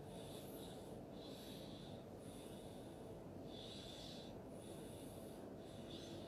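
Faint, soft breathing close to a microphone, hissy in-and-out breaths about a second or so each, over a steady low room hum.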